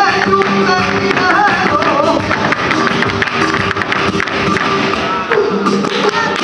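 Live flamenco music from a band, with guitar and a wavering melodic line. Over it runs a dense stream of sharp percussive taps and claps.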